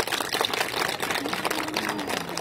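A seated audience applauding: a dense, irregular patter of hand claps.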